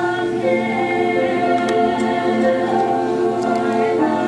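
A school choir singing held chords, several voice parts together, with a female soloist in front.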